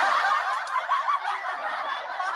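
Laughter, thin and tinny, running on without pause.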